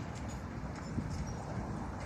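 A train of empty steel sugarcane wagons rolling along narrow-gauge track, a steady low rumble with scattered sharp clacks from the wheels on the rails.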